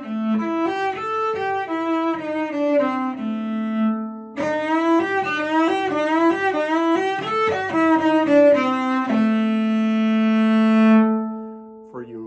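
Bowed cello playing two quick runs of blues-scale notes, each ending on a long held low A; the second held A fades out near the end.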